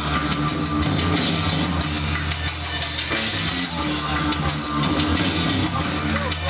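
Neofolk-industrial band playing live: a steady instrumental passage with bass guitar, guitar and drum kit with cymbals, without vocals.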